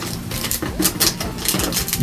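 Handling of trading-card box packaging and booster packs: an irregular run of quick light clicks, taps and rustles.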